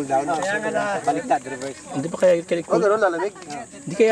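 Men talking, their voices overlapping, over a faint steady hiss.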